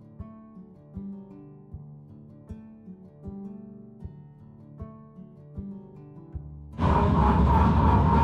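Background music of evenly paced plucked notes. About seven seconds in it cuts abruptly to the loud running noise of the mine's rider car, with a steady whine, as the car starts to move.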